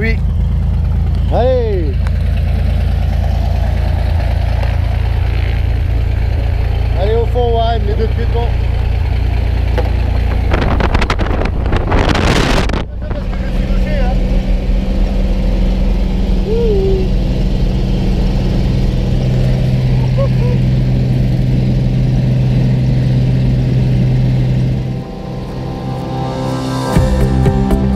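Piston engine of a single-engine high-wing jump plane idling with a steady low drone. About halfway through, a loud rush of wind on the microphone lasts around two seconds, and a few short shouts sound over the engine.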